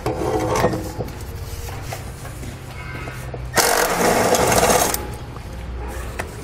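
Ratchet turning a 13 mm socket, backing out the bolt that holds the exhaust hanger to the frame rail. The tool noise is loudest in a burst of about a second and a half, a little past halfway through.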